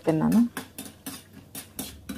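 Light clinks and scrapes of a spatula and spoon against a steel cooking pan, a quick irregular run of ticks over the last second and a half.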